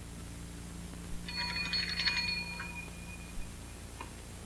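An electric bell rings once in a rapid, continuous burst of about a second and a half, starting about a second in. Steady hiss and hum from an old film soundtrack run underneath.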